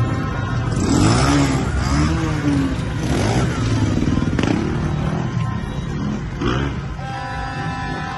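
Motor scooters and cars passing close by in a crowded street, engines revving, loudest from about a second in until about six and a half seconds, with music underneath.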